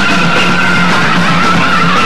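A rock band playing live at full volume: distorted electric guitar and drums, with a sustained high note held throughout.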